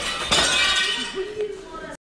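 Glass breaking: a crash about a third of a second in, then shards clinking and ringing as they settle. A person's voice cries out about a second later.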